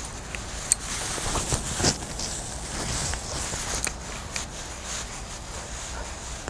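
A cast with a spinning rod and reel: a soft rushing of line running off the spool, with a few light clicks from the tackle.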